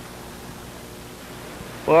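Steady low background hiss with no other sound, until a voice starts speaking near the end.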